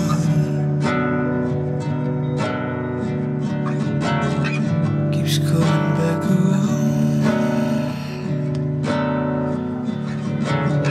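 Song with strummed acoustic guitar and a sung vocal line.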